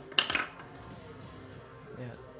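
A short cluster of metallic clinks about a quarter second in, over quiet background music.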